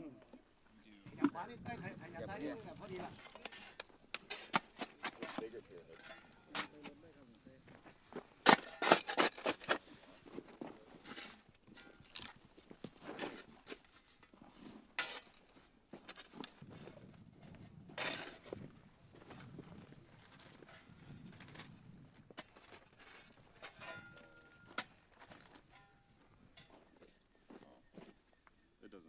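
Irregular knocks and clunks of unexploded ordnance being handled and set down in a dirt pit, with scraping of soil; the loudest run of knocks comes about nine seconds in.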